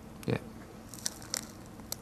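Soil being dropped onto a plate microphone that records straight from its surface, the grains landing as a few sharp crackling ticks, about a second in and again near the end.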